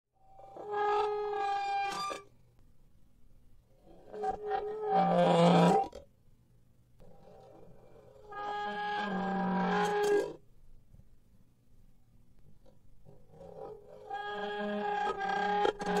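Horror sound effect of an unknown, scary creature-like cry: four drawn-out pitched cries, each about two seconds long, with pauses of about two seconds between them.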